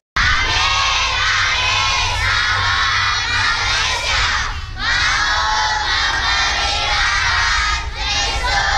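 A large group of children calling out together in unison, loudly, in two long phrases with a short break about halfway through.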